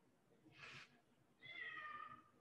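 A pet cat meowing faintly to be let in: a short soft sound about half a second in, then one meow that falls slightly in pitch near the end.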